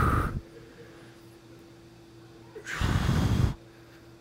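A man breathing hard during an exercise hold: a short, forceful breath right at the start and a longer, noisy exhale about three seconds in.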